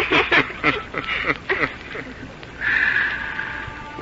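Several people laughing in short bursts, dying away after about two seconds.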